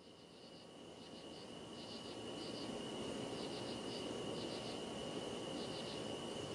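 Faint chirping of insects such as crickets, in short irregular clusters over a steady high tone, with a low hiss that comes in about a second in and slowly swells.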